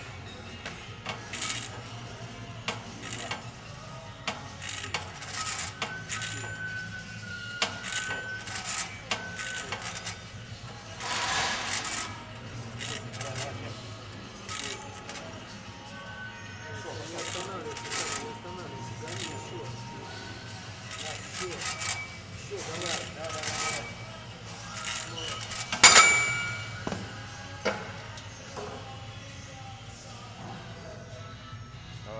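Metal weight-stack plates of a seated cable row machine clinking again and again during the set, with one loud metallic clank about 26 seconds in as the stack is let down at the end of the set. Background music and faint voices run underneath.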